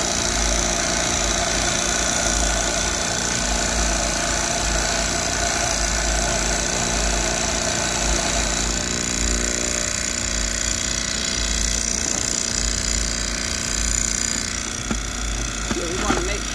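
A store's self-serve commercial coffee grinder runs steadily, its motor grinding whole beans on a medium setting while the grounds pour through the spout into a bag. The tone of the grinding changes about halfway through.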